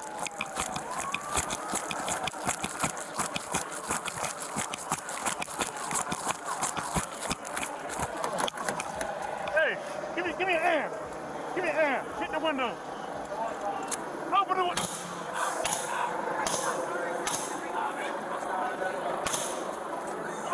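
Body-worn camera microphone rustling and knocking as its wearer hurries along, with a siren falling in pitch at the start. In the second half, raised voices shout indistinctly, followed by a run of sharp knocks.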